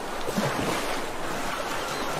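Steady rush of ocean waves and surf.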